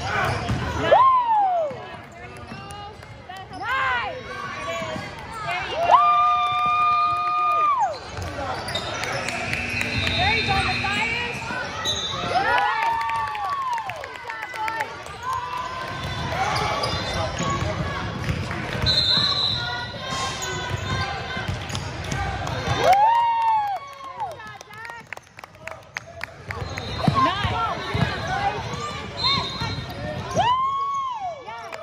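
Sounds of a basketball game in a gym: a ball being dribbled on the hardwood, with sneakers squeaking on the floor in short chirps throughout, mixed with spectators' voices. A longer held squeak or tone sounds about six seconds in.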